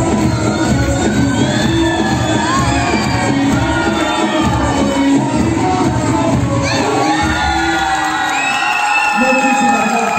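Dance music playing loud and steady, with an audience cheering and giving short whoops and shouts over it.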